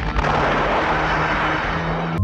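A sudden blast as the burning pit flares up in a billow of smoke and flame, followed by a dense rushing noise that holds for the whole two seconds.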